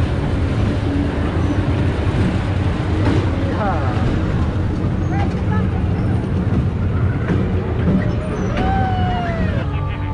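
Fairground ride machinery running with a steady low rumble, with scattered voices and a couple of calls from the crowd over it.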